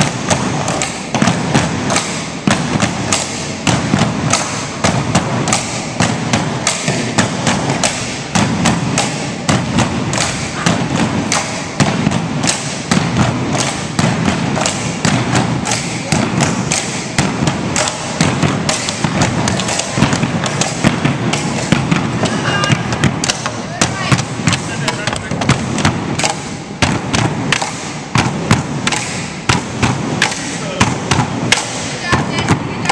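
Tinikling poles knocked on their floor blocks and against each other in a steady, repeating rhythm, with dancers' feet landing on the wooden gym floor between them.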